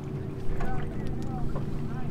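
Boat engine running at a steady low hum.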